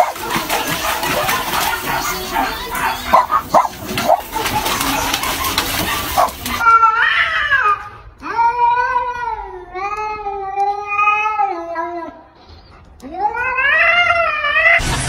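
Domestic cats in a standoff, yowling: three long, drawn-out yowls that rise and fall in pitch, the middle one lasting several seconds. Before them come about six seconds of rough noise with sharp clicks.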